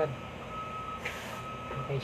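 A steady high-pitched tone with brief breaks runs throughout. About a second in comes a short rustle of plastic wrapping as the exhaust fan is handled on it.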